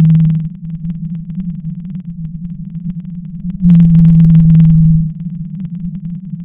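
Blue whale call: a steady low hum with a louder, rougher call over it. The first call fades out just after the start, and another comes about three and a half seconds in and lasts about a second and a half.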